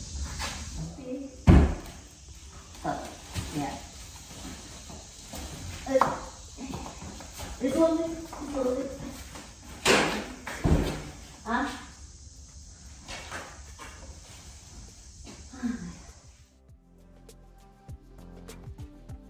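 Knocks and thumps of a door being handled and set down against a hard floor and walls. The loudest bang comes about a second and a half in, with two more around the middle.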